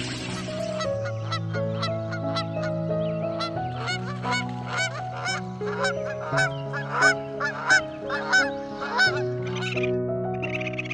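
Bar-headed geese honking, a quick run of repeated calls that starts about a second in and is loudest in the second half. Soft background music with long held notes plays underneath.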